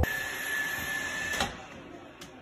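Robot vacuum running with a steady high whine over a hiss. A click comes about one and a half seconds in, and then the whine stops and it goes quieter.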